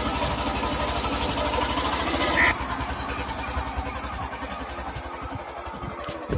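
Hero Super Splendor's single-cylinder 125 cc four-stroke engine running, then pulling away and growing steadily quieter as the motorcycle rides off. A short high-pitched blip about two and a half seconds in.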